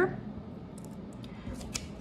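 A sheet of paper being handled and lifted, rustling with a few short, crisp crackles in the middle and near the end.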